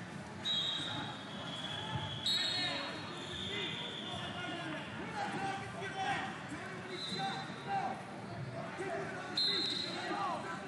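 Echoing wrestling tournament hall: voices of coaches and spectators calling out over one another, with thuds on the mat. Several high steady tones of a second or two each start abruptly across the hall, about half a second in, after two seconds, around seven seconds and near the end.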